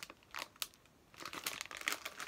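Plastic sweet packaging crinkling as it is handled: a couple of brief crackles under a second in, then a denser run of crinkling through the second half.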